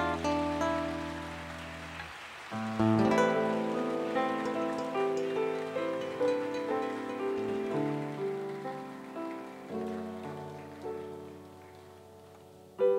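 Solo acoustic guitar played fingerstyle in the instrumental outro of a ballad: single plucked notes and arpeggiated chords that ring and die away, with a final chord struck near the end and left to fade.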